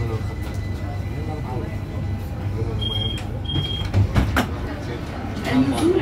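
Inside an Algiers Metro car at a station stop: the car's low steady rumble, two short high beeps about three seconds in, then a couple of sharp knocks as the sliding doors open.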